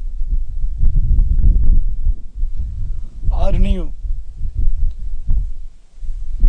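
Wind buffeting the microphone in uneven low rumbling gusts, with a man's voice briefly sounding one drawn-out word a little past halfway.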